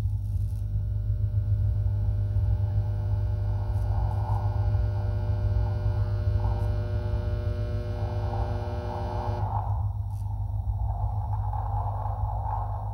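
Loud, steady low hum with a stack of held higher tones above it. The tones cut off suddenly about three-quarters of the way through, leaving the hum and a faint rushing noise.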